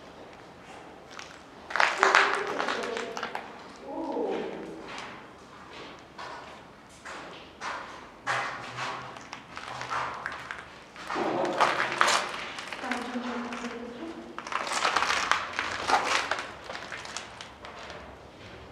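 Voices of other visitors in the background, somewhere in the fort, calling out in four bursts without clear words, with scattered sharp knocks in between.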